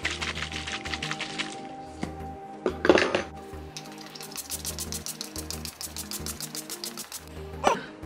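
Pump bottle of matte setting spray spritzed twice, short hissing bursts about three seconds in and near the end, over background music with a steady beat.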